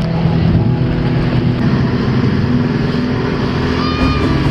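Motorboat engine running steadily as it tows an inflatable donut tube, with the rush of water.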